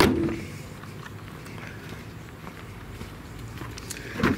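The hood of a 2012 Volkswagen Eos slammed shut, one sharp bang that fades fast. A low steady background follows, with a few faint footsteps.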